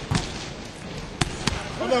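Basketballs bouncing on a hardwood gym floor: a few separate sharp thuds.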